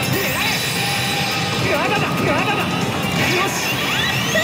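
Pachislot Bakemonogatari machine playing its music and electronic sound effects, with sweeping, warbling tones, over the constant loud din of a pachinko parlor.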